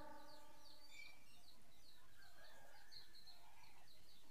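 Faint birds chirping outdoors, short high calls repeating a few times a second.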